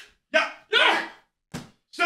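A man gives two short wordless shouts, then there is a short thud about a second and a half in.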